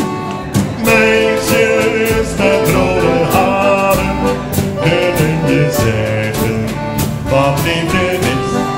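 Live accordion, acoustic guitar and drum kit playing an upbeat Dutch sing-along song with singing, the drums keeping a steady beat of about two strokes a second.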